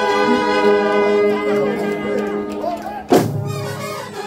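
A Kerala bandset brass band plays live: trumpets and other horns hold long notes over the drums. About three seconds in comes a sudden loud percussive hit.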